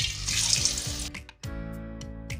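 Thin raw potato slices dropped into hot oil in a kadai, sizzling hard for about a second as they go in, then settling down. Background music plays throughout.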